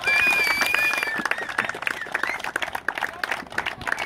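A crowd clapping in a dense, continuous patter. High-pitched cheering is held over it for about the first second.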